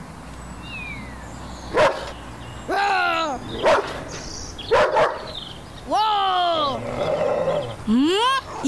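Cartoon dog vocalising: three calls that each fall in pitch, from about three seconds in, with a few sharp clicks in between.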